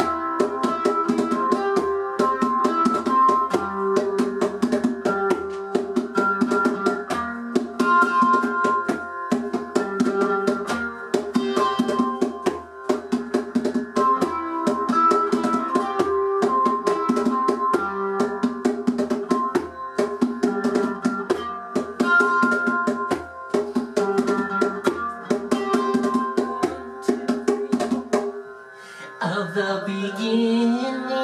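Ukulele strumming a single C chord with a hand drum beating a fast, steady rhythm, and no singing. The music dips near the end.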